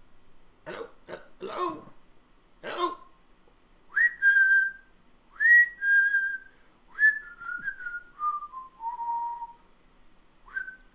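A person whistling a short tune: two notes that each swoop up and hold, then a run of notes stepping downward. Before it come a few short throaty vocal noises.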